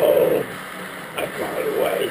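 A man's loud, held bellowing vocal, sung along to heavy metal, breaking off about half a second in, followed by shorter, quieter vocal sounds.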